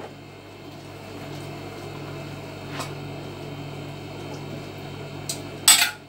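Steady low hum of a kitchen appliance or fan, with a faint click midway and one sharp clatter near the end, as a utensil knocks against a metal saucepan on the stove.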